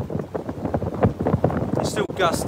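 Wind buffeting an iPhone's built-in microphone, which has no windshield, in a wind of about 25 mph: an irregular, gusty noise with no steady pattern.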